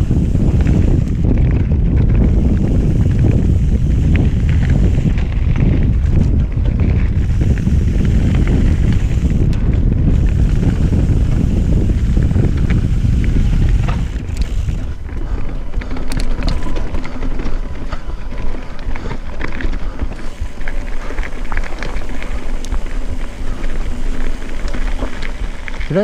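Mountain bike descending a rocky dirt trail at speed, heavy wind buffeting the camera microphone along with tyre roar and the bike's rattle. About halfway through the wind noise drops and the ride turns slower and rougher, with scattered clicks and clatter from the bike over rocks.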